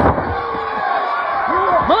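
A single heavy thud at the very start as a wrestler's body hits the ring canvas, over steady arena crowd noise.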